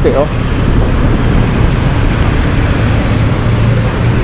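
Steady rushing noise of wind and road from a Honda Click 125i scooter riding over grooved, scraped concrete, with a steady low hum underneath.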